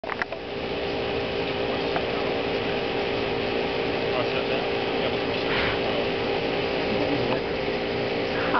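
Radio-controlled scale OH-58D Kiowa Warrior model helicopter running on the ground with its main rotor spinning: a steady mechanical whine of several tones over a rushing hiss, after a few clicks at the start.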